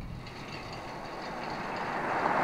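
A Rolls-Royce Wraith coupé driving toward the listener, its road noise swelling steadily as it approaches.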